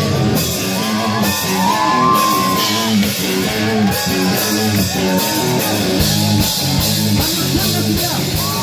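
Live rock band playing: electric guitar and drums at full volume, with a vocalist singing and shouting over them.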